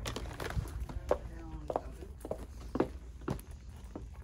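Boxed toys and packaged items being put into a plastic shopping basket: a run of scattered knocks and clacks, with footsteps on a hard floor.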